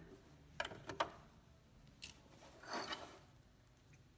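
Small sewing scissors snipping thread ends: a few faint, sharp clicks, with a short rustle of fabric about three seconds in.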